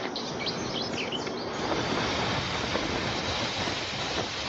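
Birds chirping over a light outdoor breeze. About one and a half seconds in, a steady rushing of wind swells up and holds as the birds fall away.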